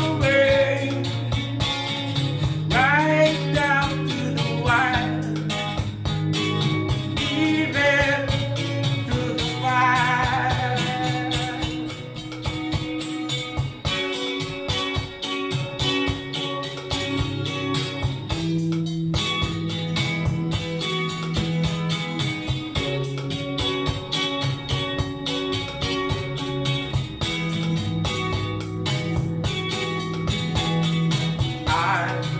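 An instrumental stretch of a slow ballad: electric guitar played along with backing music that carries a steady bass line. Bending lead notes stand out over the first ten seconds or so, and after that the music settles into sustained chords.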